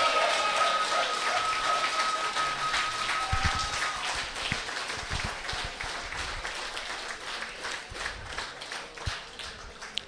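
Audience applauding, the clapping slowly fading away; a steady high tone is held through the first four seconds.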